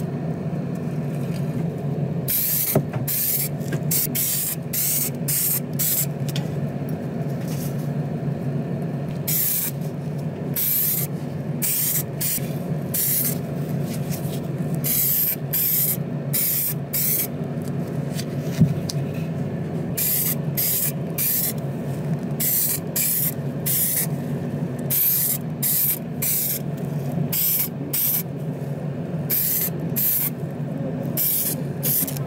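Paint spraying in many short hissing bursts, stopping and starting every second or so, over a steady low hum.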